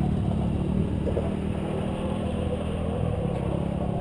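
A quad's engine idling steadily at low revs.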